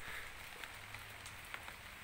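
Faint, steady outdoor hiss with a few soft ticks and a low hum underneath.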